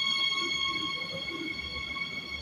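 Electric regional train moving slowly along the platform. Its traction equipment gives a steady high whine of several tones over a low rumble.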